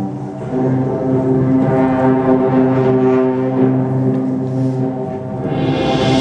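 High school symphonic band playing held chords with the low brass to the fore, changing chord about half a second in. Near the end the full band swells in, louder and brighter.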